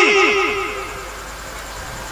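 A man's chanted voice through a loudspeaker system. Its last word repeats in quick, fading echoes and dies away within the first second, leaving a low steady hum from the sound system.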